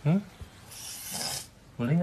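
A brief rustling rub of about a second, fabric or skin scraping close against the microphone, set between short bits of a man's speech.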